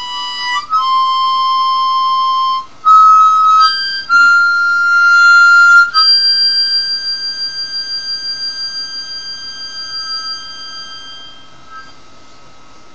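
Nickel-plated diatonic harmonica in C playing the closing phrase of a slow melody solo: a few long held notes, then a final note held with a pulsing tremolo from about halfway, slowly fading away.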